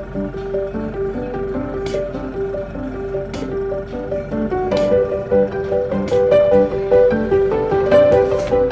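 Background music: a tune of short, quick notes that changes pitch from note to note.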